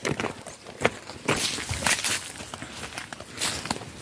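Footsteps on a dirt footpath through grass and weeds, a few uneven footfalls over the seconds.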